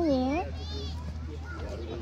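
A toddler's voice: a hummed "mm-mm" rising and falling in pitch at the start, a brief high squeal about half a second later, then quieter babble.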